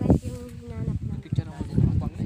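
A flying insect buzzing near the microphone: one steady hum, lasting under a second, near the start.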